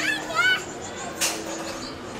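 A toddler's high-pitched babbling in the first half-second, then a single sharp knock about a second in as a plastic toy saucer is put down on a table.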